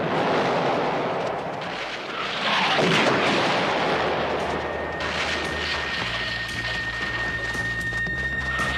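Explosions in an attack on a camp: a loud blast about two and a half seconds in, over continuous rumbling noise. From about four seconds in, a low sustained music score comes in underneath.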